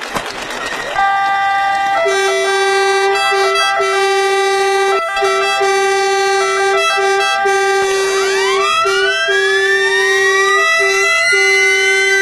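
Ambulance sirens sounding. About a second in, a steady pitched siren tone starts, broken by short regular gaps. About eight seconds in, more sirens wind up with a rising wail that levels off.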